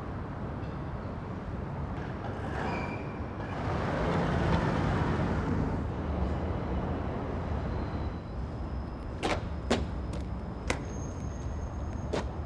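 Steady low outdoor rumble that swells and fades about four to six seconds in, then several short sharp clicks in the last few seconds.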